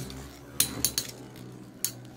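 Three Metal Fight Beyblades (Dark Gasher, Dark Wolf and Dark Libra) spinning in a clear plastic stadium with a steady whir, clinking sharply several times as their metal wheels knock together.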